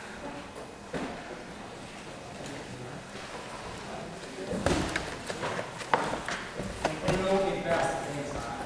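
Indistinct voices in a large hall, with several dull thumps from about halfway through.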